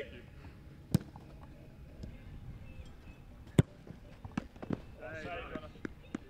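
Sharp thuds of a football being struck and caught: two loud ones about two and a half seconds apart, then a few lighter knocks near the end.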